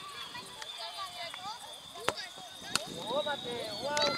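A football kicked with a sharp thud about halfway through, followed by a second thud under a second later as the shot reaches the goal, amid children's voices calling, which grow louder near the end.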